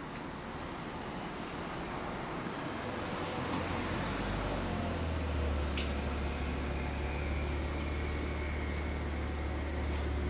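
Kawasaki ZRX1200 DAEG's inline-four engine idling through a BEET full exhaust system, a steady low drone that grows louder about halfway through.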